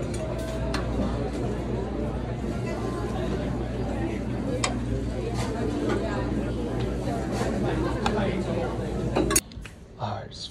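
Busy dining-hall ambience: many people talking at once, with clinks of serving spoons and dishes over a steady low hum. It cuts off suddenly near the end.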